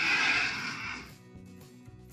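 A loud, hissing burst of noise about a second long, over a children's background music track.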